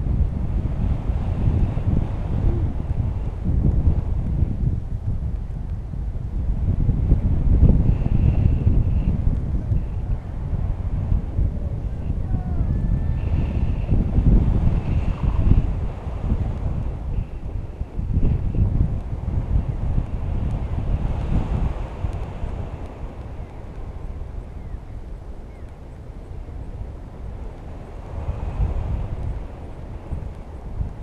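Wind buffeting an action camera's microphone during a tandem paraglider flight, rising and falling in gusts, strongest through the middle and easing for a while near the end.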